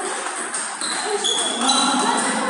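Table tennis rally: the ball ticking off the bats and the table, over the background hum of voices and other tables in a large hall.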